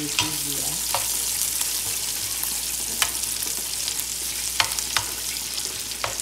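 Sliced onions and peppers sizzling in oil in a skillet, a steady hiss, while a metal spoon stirs them, clicking sharply against the pan a few times.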